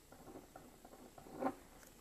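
Pen writing on paper: a run of short scratching strokes, with one louder, sharper stroke or tap about a second and a half in.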